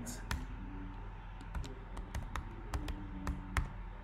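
Typing on a computer keyboard: a handful of scattered, irregular keystrokes.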